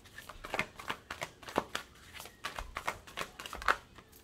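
A deck of tarot cards being shuffled by hand: irregular soft flicks and slaps of cards against each other, a few sharper ones near the end as cards spill from the deck.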